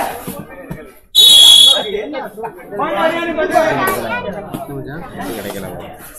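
A referee's whistle blown once, a short, loud, high-pitched blast of about half a second, over crowd talk and commentary.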